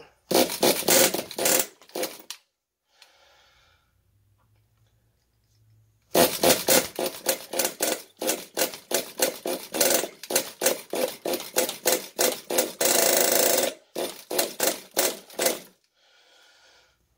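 Pull starter of an RC10GT's two-stroke glow engine yanked over and over in quick short strokes, about three a second, in two runs with a pause of a few seconds between them and one longer burst near the end. The engine is slightly flooded on gasoline and does not catch.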